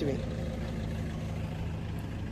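Steady low rumble of a running engine, with a faint even hum.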